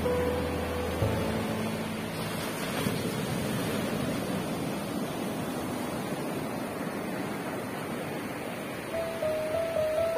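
Surf breaking and washing up a sandy beach, a steady hiss. Soft background music, playing at the start, stops about a second in and comes back near the end.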